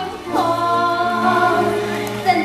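A group of women singing a show tune together with music, sliding down into a long held note about a third of a second in.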